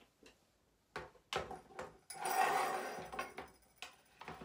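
Handling noise of a Samick children's metal-bar xylophone in its pink plastic case as it is turned around and set down on a wooden table: a few sharp knocks, then a louder clatter with brief metallic ringing from the bars about two seconds in, and one more knock near the end.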